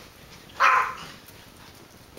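A single short dog bark from a xolo (Mexican hairless dog), coming suddenly about half a second in.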